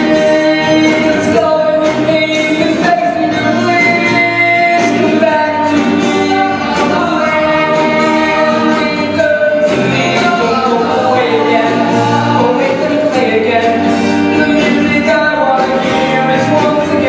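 1950s-style doo-wop song sung live by a group of voices, with long held notes over a steady beat and guitar accompaniment.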